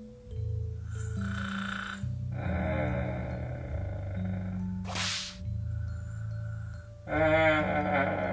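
Background music: a slow tune with a bass line stepping from note to note about once a second under brighter pitched tones, with a short swish about five seconds in.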